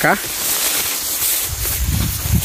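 Steady outdoor hiss with no distinct events, and wind rumbling on the microphone from about a second and a half in.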